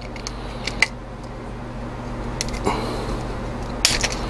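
Metal clicks and scrapes of a hand-held hole punch being worked into the thin metal top of a can to make pressure-relief holes, with a few sharp clicks spread through, the loudest near the end. A low steady hum runs underneath.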